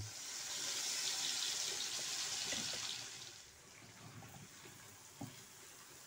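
Ground egusi paste going into hot oil in a pot: a loud sizzle starts suddenly, holds for about three seconds, then settles to a quieter frying sizzle with a few faint knocks of the wooden spoon.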